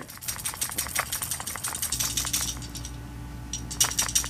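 A small 1950s cereal-premium toy submarine shaken hard by hand to throw out water, making a fast, irregular run of light clicks and rattles that thins out after about two seconds.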